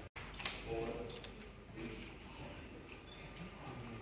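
Indistinct voices chattering in an office, with a sharp click about half a second in.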